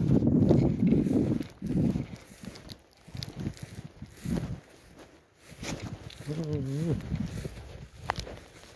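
Footsteps and rustling through tall dry grass: a loud low rumble in the first second and a half, then scattered thuds about once a second. A short low voice sound comes near the end.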